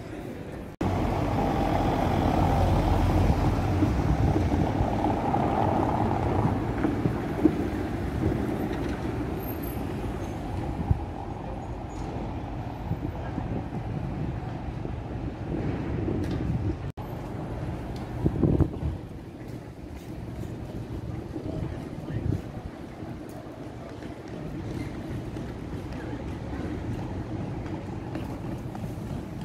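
City street noise. A heavy motor vehicle rumbles past loudly over the first several seconds, and quieter traffic and street bustle follow.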